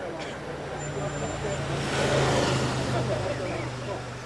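A car engine running as a car passes close by, swelling to its loudest about halfway through and then easing off.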